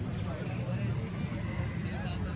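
Outdoor ambience of a cricket ground: faint, indistinct voices over a steady low rumble.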